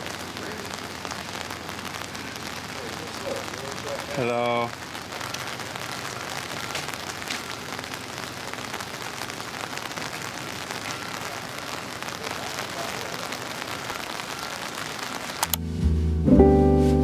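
Steady rain falling, an even dense patter on wet pavement and an umbrella, with a brief voice about four seconds in.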